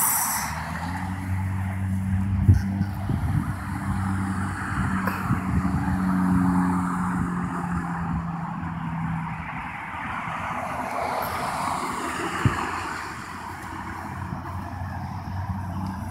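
A motor vehicle running nearby: a steady low engine hum with road noise that swells and then fades off.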